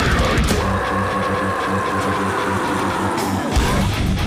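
Loud live heavy metal music: a held high note rings over chugging low notes. The low end drops back, then comes in hard again about three and a half seconds in.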